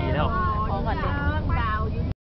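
A small child singing in a high voice, holding one note briefly near the start, over the steady low rumble of a moving car heard from inside the cabin.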